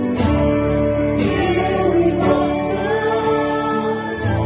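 Live worship band playing a slow gospel song: voices singing together over a Roland Juno-DS keyboard, electric guitar and acoustic guitar, with a steady bass. A held vocal note rises about three seconds in.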